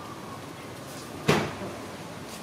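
A single sharp knock about a second and a half in, dying away quickly, over a low steady background.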